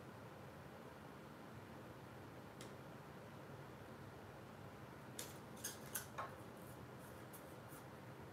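Faint handling of paper and tape: a few light crinkles and taps in the second half as small strips of tape are pressed down over metal cutting dies on cardstock.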